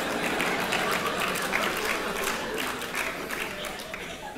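Audience applauding after a stand-up punchline, a dense patter of clapping that slowly dies down toward the end.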